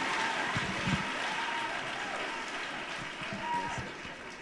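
Congregation applauding in a large hall, many hands clapping that slowly die away, with faint voices mixed in.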